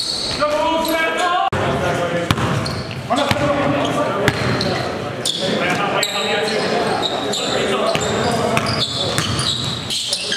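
Basketball game in a gymnasium: a ball bouncing on the floor in sharp knocks, with players' voices in the hall.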